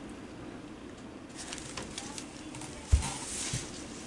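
Faint rustle of a pad of Post-it notes being handled and turned in the hands, with a low thump about three seconds in.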